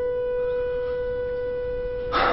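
Background music holding one sustained note, steady in pitch and level.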